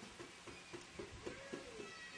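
A faint, drawn-out cry of under a second, rising and then falling in pitch, over low background noise.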